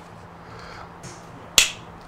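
A single sharp click about one and a half seconds in, over a faint steady low hum.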